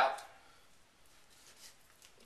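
Faint, soft sounds of a Chinese cleaver slicing through raw chicken breast on a chopping board, with a light tap about one and a half seconds in.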